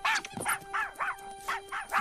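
Puppy making a quick run of short, high yips, about four a second, as it shakes a carrot chew toy in its mouth, over soft background music.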